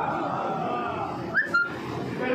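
A man's amplified recitation, a long note trailing off, then a brief high whistle-like chirp with a click about a second and a half in.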